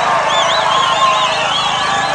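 A large outdoor crowd cheering and calling, with high warbling whistles sounding over and over above the noise.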